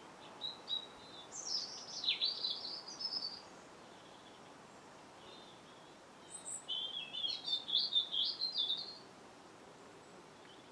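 A songbird singing two high-pitched warbling phrases, each about three seconds long, the second starting about six seconds in. A faint steady hiss runs underneath.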